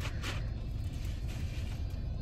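Steady low rumble inside a car cabin, with no sudden sounds.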